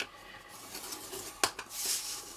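Scoring stylus scraping along cardstock in the groove of a scoring board, with one sharp click about one and a half seconds in. Near the end the card slides across the board as it is turned.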